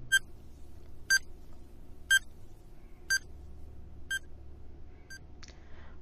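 Countdown timer sound effect: six short, high-pitched beeps, one each second, counting down the seconds, with the last one fainter and a small click just after it.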